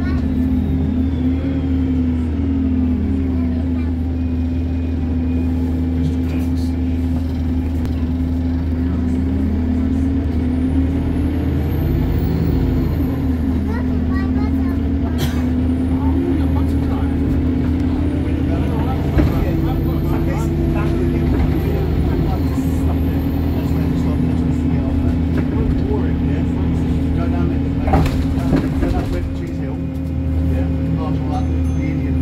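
Alexander Dennis Enviro 200 MMC single-deck bus heard from inside the passenger cabin while under way: a steady low engine and drivetrain drone whose tone rises and falls several times as the bus speeds up and slows. A brief sharp noise comes about two seconds before the end.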